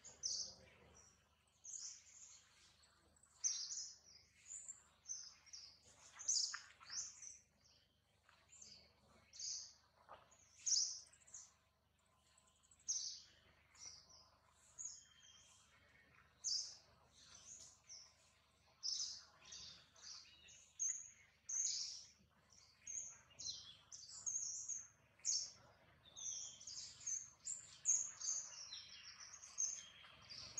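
Small birds chirping: short, high calls repeated every second or so throughout, coming thicker near the end.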